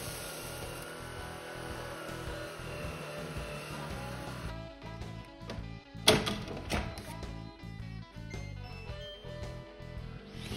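Background music with a steady rhythm throughout. For the first four and a half seconds a Shark Detect Pro cordless stick vacuum runs over carpet under it, with a steady hiss. The vacuum then stops, leaving the music, and a single sharp click comes about six seconds in.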